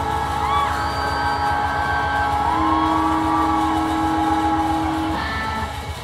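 Live band holding a long sustained chord: electric guitar notes bend slowly up and back down over steady held keyboard tones and a dense low rumble from the rhythm section. The sound begins to die away at the very end.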